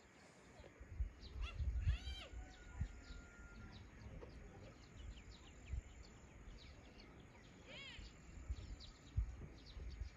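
Birds calling: many short high chirps, with two louder arching calls, one about two seconds in and one just before eight seconds, over an uneven low rumble.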